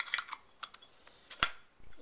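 Zippo lighter's metal insert being pushed back into its case: a few small metallic clicks and scrapes, then one sharper click about one and a half seconds in.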